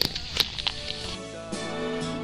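Three sharp knocks in the first second over a steady insect buzz, then acoustic guitar music comes in from about a second in.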